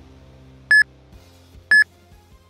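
Countdown timer beeping the last seconds of an interval: two short high beeps a second apart, over quiet background music.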